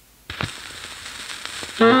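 Turntable stylus set down on a spinning 78 rpm record with a thump about a quarter second in, followed by the crackling surface noise of the lead-in groove. Near the end the recorded jazz quartet comes in loudly, led by alto saxophone.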